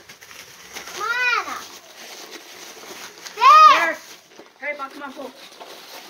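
Two drawn-out, high-pitched excited shouts that rise and fall in pitch, about a second in and again, louder, at about three and a half seconds, with a shorter call near the end, over the faint crinkle of plastic wrap being unwound from a prize ball.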